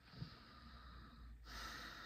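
A woman breathing faintly through her nose: one soft breath, then a slightly louder one beginning about a second and a half in.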